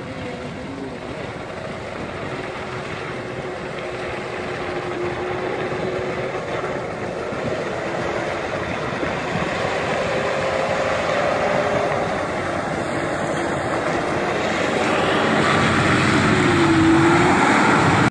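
Nissan Patrol Y60 4x4 engine running steadily as the vehicle drives across soft sand toward the listener, growing louder as it nears. Near the end the engine note dips and picks up again, and the rush of tyres churning through wet sand grows.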